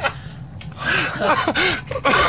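A person laughing breathily: a quick run of short, wheezing voice bursts starting about a second in, over a low steady hum.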